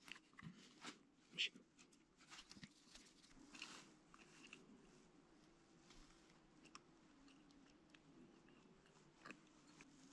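Near silence, with a few faint, short clicks and rubs of gloved fingers working two-part metal filler onto a steel wheel rim. One slightly louder click comes about one and a half seconds in.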